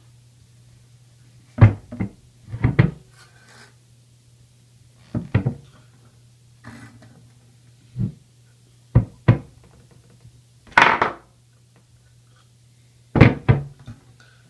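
Irregular knocks and clacks of a bare aluminium 45RFE transmission valve body being handled and set against a hard tabletop, with one longer scrape around the middle. A steady low hum runs underneath.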